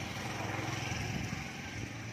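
A small engine running with a steady low hum, a little louder in the first half and easing off toward the end.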